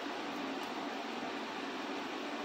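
Steady, even hiss of room noise, with nothing else standing out.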